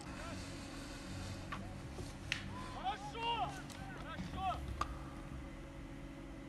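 Faint shouts and calls of footballers on the pitch, clustered in the middle of the stretch, over a low steady background hum, with a few short sharp knocks.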